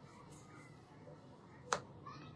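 A single sharp click near the end, over quiet room noise.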